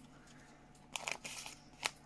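Handheld embossing pliers pressed onto a matte paper sticker still on its backing roll, and the sticker strip handled: faint clicks and crunching about a second in, then a single click just before the end.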